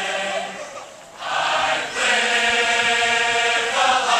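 A large marching band singing together in chorus. The sung line dips briefly about a second in, then swells and holds steady.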